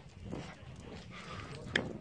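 Quiet footsteps on an asphalt pavement, soft irregular steps, with one short sharp click near the end.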